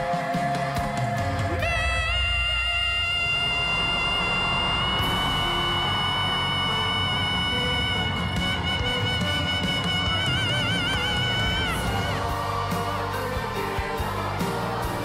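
Live concert recording of a pop song with band and crowd: one long high note is held for about ten seconds, its pitch starting to waver in vibrato near the end, with crowd cheering in the mix.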